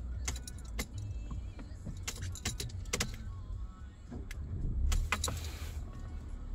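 A car cabin with a steady low hum, broken by scattered sharp clicks and knocks of hands at the console controls and the keys jangling on the ring that hangs from the ignition.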